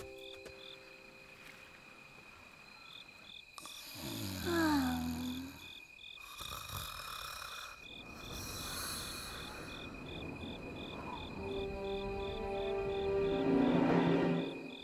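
Crickets chirping in an even pulse of about three chirps a second, over a steady high insect trill: a cartoon night-time ambience. A falling voice-like sound comes about four seconds in, breathy noise around six and nine seconds, and a low hum builds near the end.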